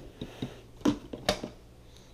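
Handling noise as a ribbed plastic vacuum hose is set down on a table: several short knocks and clicks, the loudest just under a second in.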